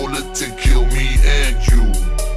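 Screwed and chopped hip hop track, slowed down, with a rap vocal over deep bass hits that land about twice a second.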